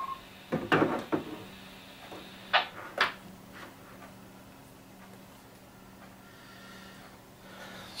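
A few short knocks and clicks as the Astatic D-104 desk microphone and the handheld radio are handled and the mic is set down on the desk: a cluster about a second in, then two more between two and a half and three seconds. A faint steady low hum runs underneath.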